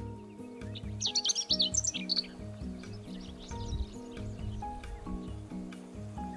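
Chestnut-eared bunting singing: one rapid, jumbled twittering phrase about a second in, lasting just over a second, with a few faint notes later, over background music.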